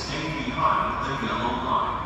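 Indistinct, unintelligible voices echoing in a large station hall.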